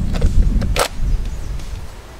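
A SIG P320 pistol is pushed into a Safariland 7 series polymer holster, with short scrapes and then a sharp click about three-quarters of a second in as it seats, over a low rumble.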